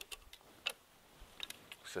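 Hand pruning secateurs snipping rose stems: a few short, sharp clicks, the clearest a little under a second in.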